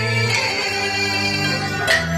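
Live Chinese traditional ensemble music: plucked strings over sustained notes, with a few sharp plucked attacks.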